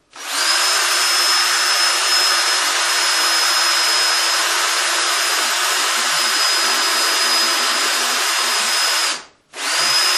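Bosch electric drill running steadily with a high whine as it drills screw holes into the side of a wooden board. It stops near the end, then runs again briefly.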